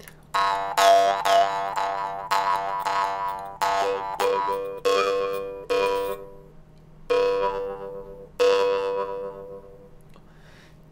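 Jaw harp plucked over and over in an uneven rhythm, every twang on the same low drone note, the later ones left to ring out and fade. The bright overtones above the drone shift from one twang to the next as the player opens and closes the throat and glottis to shape the harmonics.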